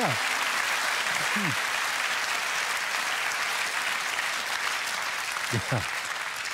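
A theatre audience applauding steadily, thinning slightly near the end.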